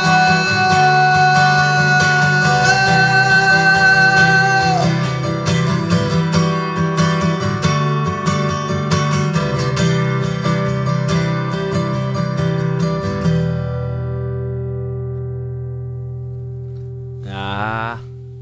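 A band's acoustic guitars strum a song's closing chords while a singer holds one long note for about the first five seconds. The strumming stops about 13 seconds in and the final chord rings out and fades. A man's voice starts speaking near the end.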